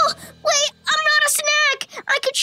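A high-pitched cartoon voice making three short, sing-song syllables.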